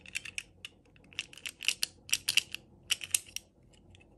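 Rapid clusters of small clicks and crackles as a soft rubbery snap-on dress is pulled off a small plastic princess doll, the plastic rubbing and popping off the doll's body.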